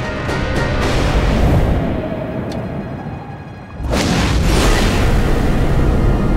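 Soundtrack music over a heavy low rumble, broken about four seconds in by a sudden loud hit that stays loud.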